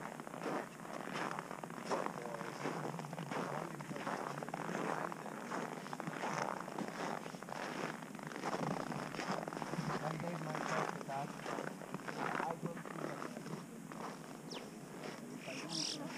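Irregular crunching footsteps on packed snow, with indistinct voices.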